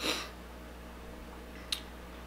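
A short breath through the mouth, then a single wet mouth click or lip smack near the end, over a low steady room hum, as the heat of a hot pepper builds on the tongue.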